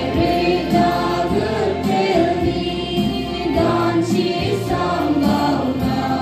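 Choir singing a hymn, with a low beat recurring about every second or so underneath.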